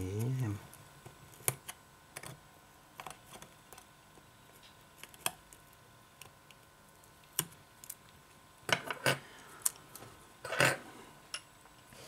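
Scattered small clicks and taps of metal tweezers on an opened iPhone 6's internals as its charging-port flex cable is pried loose, with a denser run of louder clicks near the end.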